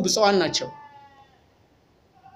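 A man speaking in Amharic ends a phrase on a drawn-out, wavering vowel that fades out about a second in, followed by a pause with almost no sound.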